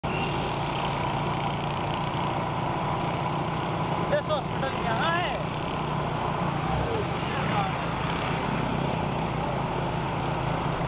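Motorcycle engines running steadily at road speed, with road and wind noise as the bikes ride along. A person's voice comes in briefly about four to five seconds in, and again faintly a little later.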